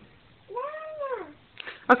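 A toddler's short wordless call, high-pitched, rising and then falling in pitch, lasting under a second.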